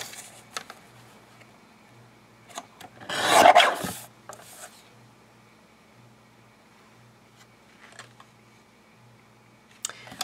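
A Fiskars paper trimmer's blade sliding through a sheet of paper: one rasping cut lasting about a second, about three seconds in. A few light clicks come from handling the trimmer.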